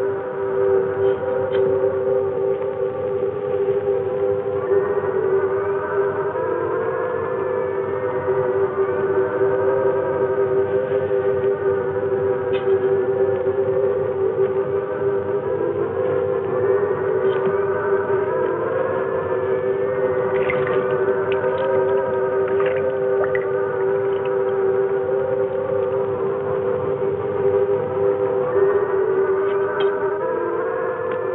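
Electronic science-fiction soundtrack: a steady drone of two low held tones, with slow gliding, wavering tones drifting above and a few brief high pings.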